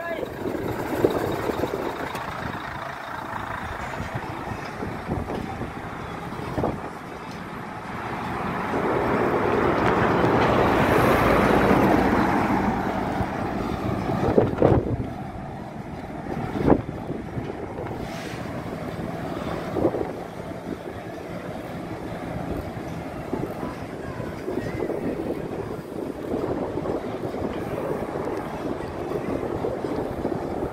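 Road noise from heavy trucks, with wind on the microphone; a truck passes, swelling and fading about 8 to 13 seconds in, and a few short knocks follow.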